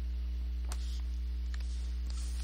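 Steady electrical mains hum with its overtones, unchanging throughout, with one faint click about two-thirds of a second in.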